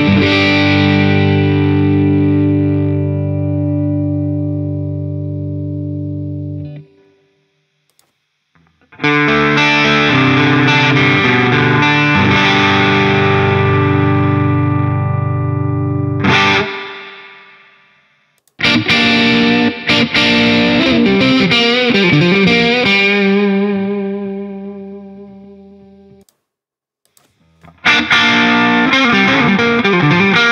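Gibson Les Paul electric guitar through a distorted Marshall-style amp simulation (AmpliTube's British Tube Lead 1), heard first in AmpliTube 4 and then in AmpliTube 5. Distorted chords ring out and stop twice, with short silent gaps. Then comes a lead phrase with bent notes, and the playing starts again near the end.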